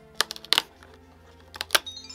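Perforated cardboard door of an advent calendar box being pried open with a fingernail: a few sharp clicks and snaps of the card giving way, in two clusters, one about half a second in and one near the end, over soft background music.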